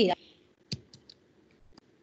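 Four short, sharp clicks spread over about a second, after a voice trails off.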